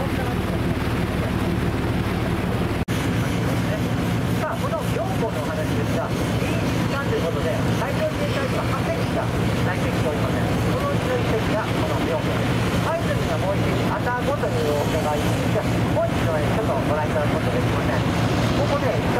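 Steady drone of a sightseeing cruise boat's engine under way, with people talking in the background over it. There is a brief break in the sound about three seconds in.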